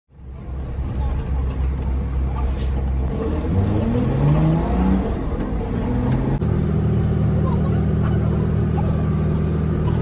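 Bus engine running and accelerating, its pitch rising in several steps as it pulls through the gears, with a fast light ticking over it. Then a steady low engine hum from inside an airport apron bus.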